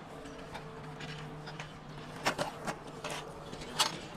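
A handful of sharp clicks and knocks from an RV awning's anti-flap arm fittings being handled and fixed in place, bunched in the second half with the loudest near the end, over a faint steady hum.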